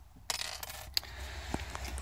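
Handling noise: soft rustling with a few light clicks scattered through it.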